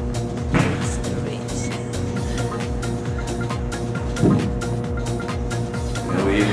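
Background music with a steady beat, with two short bursts of noise, about half a second in and at about four seconds in.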